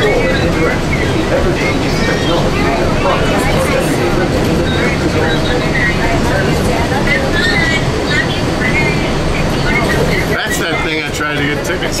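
Walt Disney World Mark VI monorail car running, a steady low rumble heard from inside the cabin, with people's voices talking over it.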